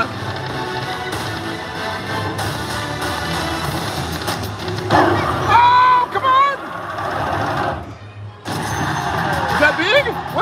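Video slot machine sounds during a free-games bonus round: a continuous electronic music bed with reel-spin effects over casino background noise. A loud pitched sound with wavering tones comes about five seconds in, and the sound briefly drops out near eight seconds.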